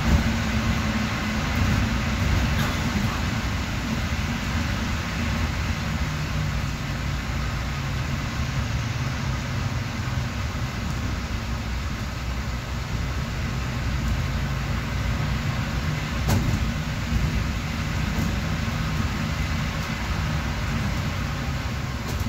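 City bus driving, heard from inside near the front: a steady engine hum with road and tyre noise, the engine note shifting as it changes speed. One brief knock comes about sixteen seconds in.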